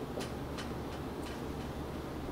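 Dry-erase marker on a whiteboard: a few short, scratchy ticks as it is stroked and tapped against the board, over a steady low room hum.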